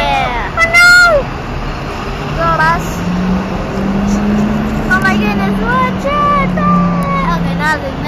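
City bus engine running as the bus moves off close by, its low hum rising in pitch about three seconds in and holding before dropping away near the end, with high-pitched voices calling over it.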